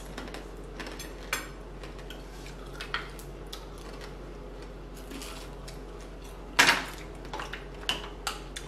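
Cutlery and dishes clinking during a meal: scattered small clicks and taps on plates, with one louder clatter about six and a half seconds in.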